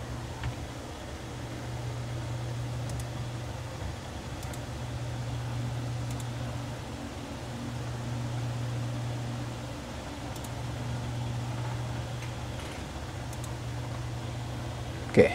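Steady low hum with a hiss of background noise, with a few faint clicks scattered through it.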